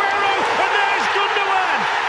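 Football stadium crowd cheering a goal: a loud, sustained roar with long drawn-out shouts.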